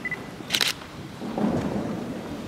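A brief high beep, then a short sharp rustle about half a second in and a duller low rumble a second later: handling or rustling noise close to the microphone.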